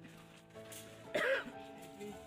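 Soft background music with long held notes, and a single short cough close to the microphone a little over a second in.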